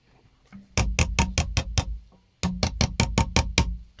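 Fingers tapping the lid of a small metal wood-finish can shut, in two runs of quick, even taps of about five a second, each run over a steady low tone.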